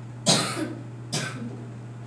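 A man coughs twice, about a second apart, the first cough the louder.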